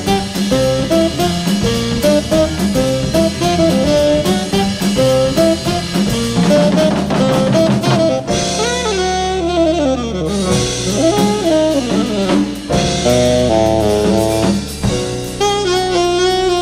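Live jazz quintet: a saxophone solos over drum kit, piano and bass. About halfway through the cymbals and drums thin out and the saxophone carries on with bending, sliding phrases, then quicker stepped runs near the end.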